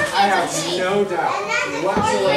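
Children's voices chattering indistinctly, with no clear words.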